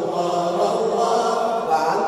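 A man singing a nasheed solo into a microphone, drawing out long, gently gliding notes in a chant-like melody.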